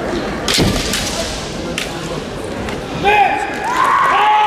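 Kendo tournament hall: two sharp impact cracks from the bouts, about half a second and nearly two seconds in, then drawn-out kiai shouts from the competitors near the end, over a steady reverberant hall murmur.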